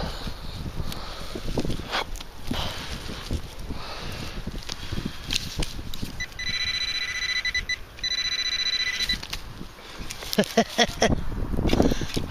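Soil being scraped and crunched as a small hole is dug into. About six seconds in, a handheld metal-detecting pinpointer gives a high, pulsing electronic buzz for about three seconds, with one short break, alerting on a metal target in the hole. A few sharp knocks follow near the end.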